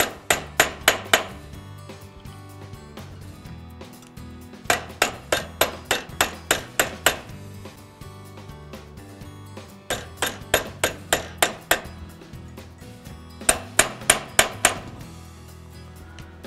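Nylon-faced insert hammer striking a brass bracelet over a steel forming stake, forming its curve without marking the metal. The blows come in four quick runs of about three to four a second, with pauses between. Soft background music runs underneath.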